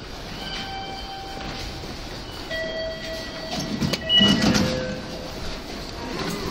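A train in the station, with several steady high whining tones and a rumble that is loudest about four seconds in.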